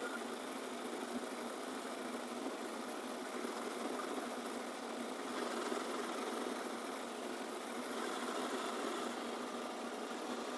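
Metal lathe running steadily, its tool facing the end of a steel motorcycle sidestand held in a steady rest: an even machine whir with no sharp knocks.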